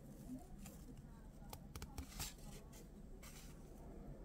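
Faint handling of 1984 Fleer football cards, the cardboard cards slid off the stack one to the next, with a few soft clicks and ticks about halfway through.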